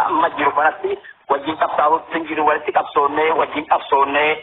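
Speech only: a voice talking steadily, with a brief pause about a second in.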